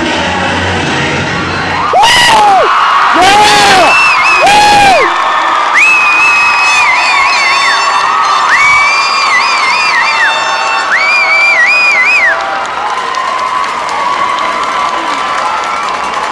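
Crowd in a gym cheering, with three loud whoops in quick succession and then three long, high whistles that warble at their ends.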